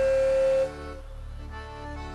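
Piano accordion holding a loud sustained note over a chord. The note cuts off about two-thirds of a second in, leaving a softer held chord.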